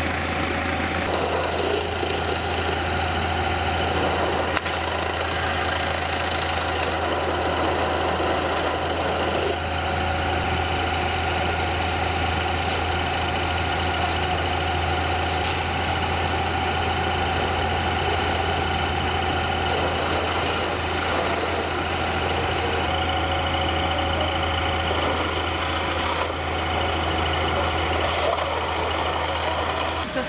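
Fire engine's engine running steadily at constant speed while its pump feeds a hose, a strong low hum with a steady higher drone over an even hiss.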